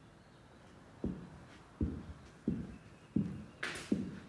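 Footsteps on a bare wooden subfloor: about five low steps starting about a second in, with a short hiss near the end.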